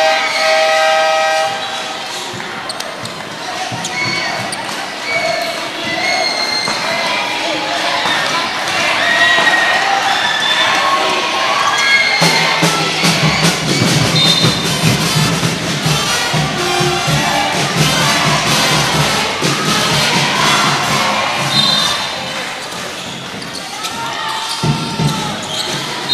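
Basketball game in a gymnasium: a ball dribbling on the hardwood court under steady crowd noise, which grows louder about halfway through.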